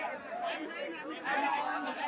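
Faint background chatter of several people talking at once, with no one voice standing out.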